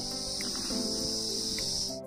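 Steady, high-pitched chirring of insects, cutting off suddenly at the end, heard together with background music of long held notes.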